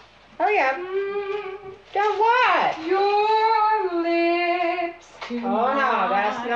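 A woman singing unaccompanied in a few long, held notes. Just before the end a second woman's voice comes in, lower and broken up.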